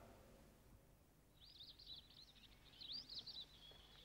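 Faint birdsong: quick, high chirping phrases that start about a second and a half in, over near silence.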